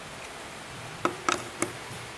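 Four sharp clicks of small hard parts being handled on a workbench, coming within about half a second starting about a second in, over a steady background hiss.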